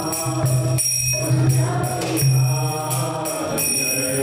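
A group chanting a Sanskrit mantra together in a steady sung recitation, with small hand cymbals (kartals) struck in rhythm and ringing on.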